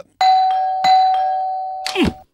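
Electric doorbell chime: two notes struck less than a second apart, ringing on and slowly fading.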